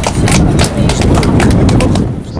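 A small group clapping hands: a quick, uneven patter of claps that dies down at the end.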